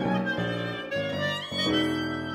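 Violin, clarinet and piano playing together in a contemporary chamber piece, the violin on top over a run of low notes that change every half second or so.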